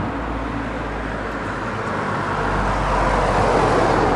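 Road traffic noise: a steady rush that grows louder over the last couple of seconds as a vehicle approaches.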